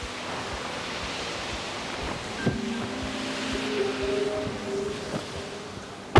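Steady rushing outdoor noise, with soft background music whose notes come in around the middle.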